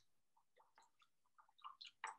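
Near silence: room tone, with a few faint soft clicks in the second half.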